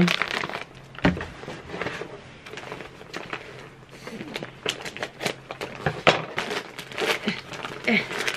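Gift-wrapping paper crinkling and crackling as a wrapped present is handled and cut open with scissors, in many small irregular rustles.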